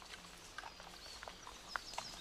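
Faint woodland ambience: scattered soft ticks and rustles of footsteps in dry leaf litter, with a few brief high bird chirps.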